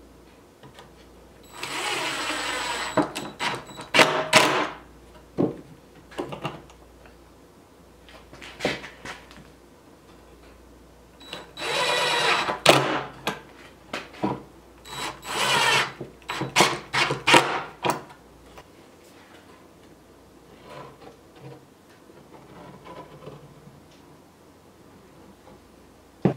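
DeWalt cordless drill drilling into a rough-sawn wood brace board in bursts: two longer runs of about a second and a half, each followed by several short bursts and clicks.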